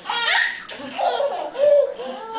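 People laughing heartily at a toddler's antics, in about three bursts.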